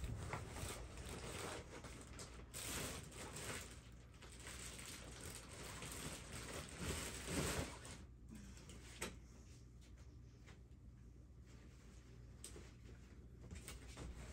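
Faint rustling and light knocks of cardboard boxes and product packaging being handled, busier in the first half and quieter after about eight seconds.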